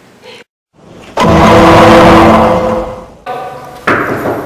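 A loud, engine-like noise with steady tones starts abruptly about a second in, holds, then fades away. A sharp knock comes just before the end.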